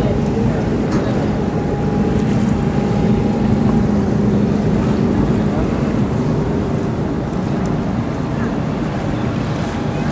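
A ferry's engines running with a steady low hum as it comes in to dock, heard from the open deck, with wind rumbling on the microphone.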